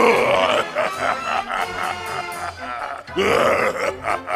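An animatronic clown Halloween prop's recorded monster voice lets out two loud vocal bursts, each rising in pitch, the first at the start and the second about three seconds in. Carnival-style music plays beneath them.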